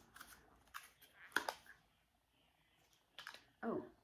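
Faint clicks of a small clear plastic wax-melt sample cup being handled and opened, with a sharper snap about a second and a half in and a few more small clicks near the end.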